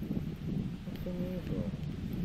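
A brief, quiet voice sound about a second in, over a low wind rumble on the microphone.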